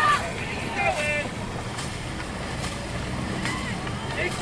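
Dragon boat crews racing: shouted calls in the first second, then a steady wash of paddle and water noise with faint regular strokes a little under a second apart.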